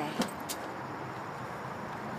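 Two short clicks early on, then steady outdoor background noise.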